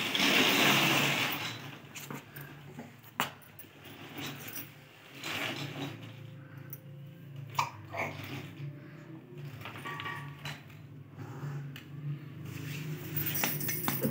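Plastic baby walker moving on a hard floor: scattered clicks and small rattles from its wheels and frame, with a short burst of rustling noise at the start.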